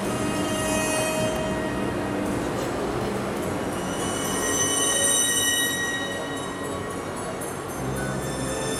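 Music for a figure skating short program, with long held high notes.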